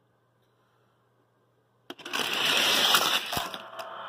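After a quiet start, a sharp click about two seconds in, then die-cast toy cars rolling and rattling loudly down a plastic race track, with a knock a little later as the noise tails off.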